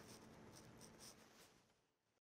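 Near silence: faint room tone fading out.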